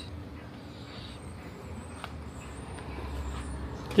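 Low, steady outdoor background rumble that grows slightly louder near the end, with a faint click about two seconds in.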